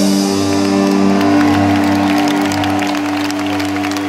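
A live symphonic metal band holds a sustained closing chord as the song ends. The arena crowd claps and cheers over it, the clapping thickening towards the end, heard from among the audience.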